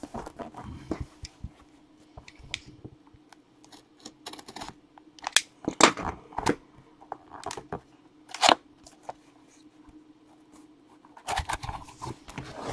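Sealed cardboard trading-card box being handled and opened. Scattered scrapes and rustles run throughout, with a few brief, louder tearing sounds in the middle as the seal is broken and the lid is worked off.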